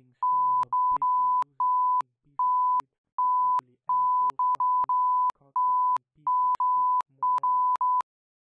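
Censor bleeps: a single-pitched beep tone cutting in and out about a dozen times in uneven bursts, laid over a run of speech that stays faintly audible underneath.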